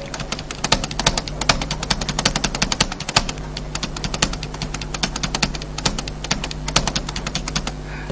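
Rapid, irregular clicking of keys on a laptop keyboard, several clicks a second, over a steady low electrical hum.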